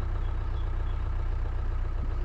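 2004 Mahindra Bolero's 2.5-litre diesel engine idling steadily, heard from inside the cabin.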